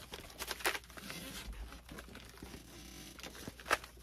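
Faint rustling and creaking of a taped styrofoam packing block being handled and turned in the hands, with a couple of sharper clicks, one under a second in and one near the end.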